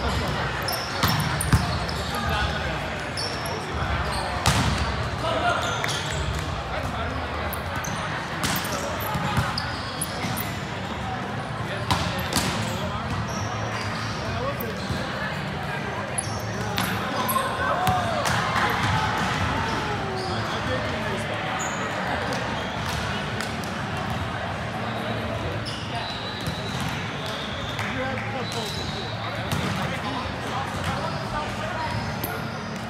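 Indoor volleyball rally: the ball slapping off players' forearms and hands in sharp, scattered hits that echo in a large gym, over indistinct players' voices.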